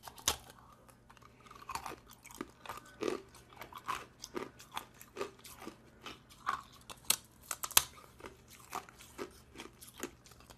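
Hard ice being bitten and chewed, a run of irregular crisp crunches and cracks, the sharpest about three-quarters of the way in.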